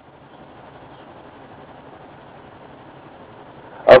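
Faint, steady background noise with no distinct sounds in it, the word "Of" spoken right at the end.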